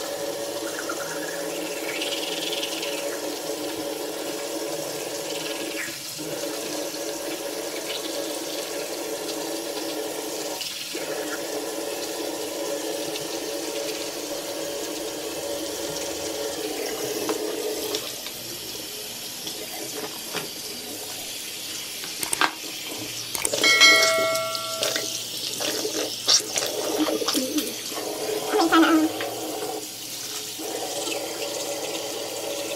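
Bathroom sink tap running, a steady rush of water that weakens about 18 seconds in. A short pitched tone sounds about 24 seconds in.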